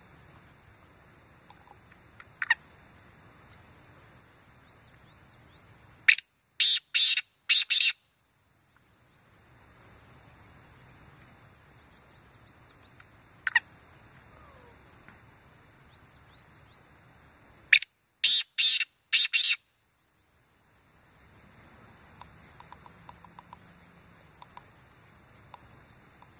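Black francolin calling: a loud phrase of about five short, sharp notes about six seconds in, repeated about twelve seconds later, each phrase preceded a few seconds earlier by a single short call.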